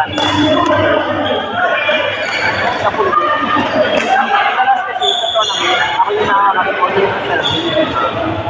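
Badminton rackets hitting a shuttlecock in a rally, several sharp hits echoing in a large indoor hall, over steady talking from players.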